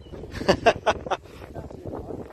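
A man laughing: a quick run of about five short bursts of laughter, a third of the way in, over low wind rumble.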